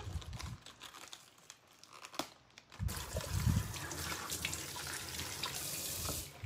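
Lettuce leaves being torn from the head with soft crinkling crackles, then from about three seconds in a kitchen tap running steadily as the lettuce is rinsed under it by hand.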